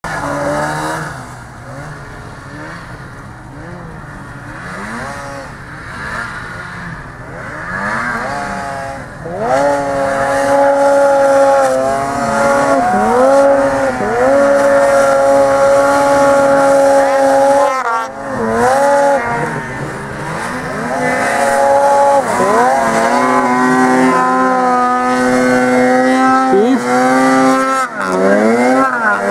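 Snowmobile engine revving hard in deep powder snow, the pitch climbing and falling with the throttle, then held at high revs for long stretches from about ten seconds in, with brief drops as the throttle is eased off. It is loud throughout.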